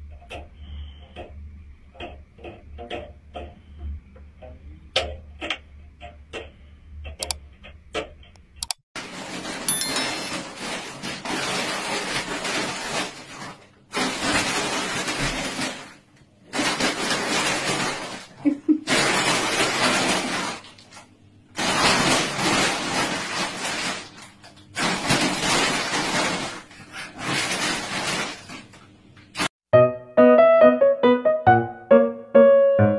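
Light ticks and taps as a cat paws at thin sticks, then loud rustling in stretches of about two seconds with short gaps, fitting a small dog moving about inside a woven plastic shopping bag.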